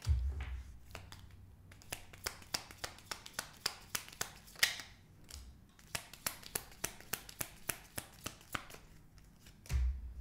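A tarot deck being shuffled by hand: a run of quick, soft card clicks several times a second, with cards dealt down onto a wooden table.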